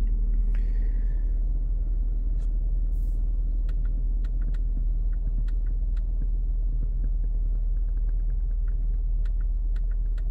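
A steady 50 Hz sine test tone played through the car's subwoofer, a constant deep hum that does not change, heard inside the cabin, with a few faint clicks over it.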